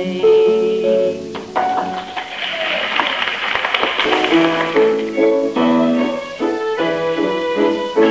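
Instrumental music from a studio band playing a short passage that leads into the next sung number, heard on an off-air domestic reel-to-reel tape recording of the broadcast. Around the middle, a noisy stretch of about two seconds covers the notes before the held band chords return.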